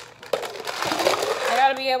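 Ice cubes clinking and rattling in plastic cups as they are tipped into a plastic shaker cup, with a few sharp clicks in the first second.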